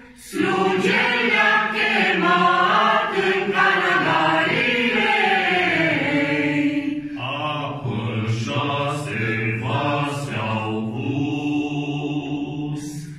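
A mixed group of men and women singing a Romanian Christmas carol (colindă) together. The singing starts just after a brief pause at the start and moves to a lower-pitched phrase about seven seconds in.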